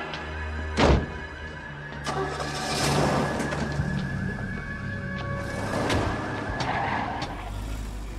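Film soundtrack of car noise under a music score, with a sharp bang about a second in.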